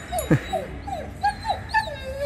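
A five-week-old Egyptian street-dog (baladi) puppy whimpering: a run of short, high cries, each falling in pitch, about four a second. About a third of a second in, one longer cry slides much lower.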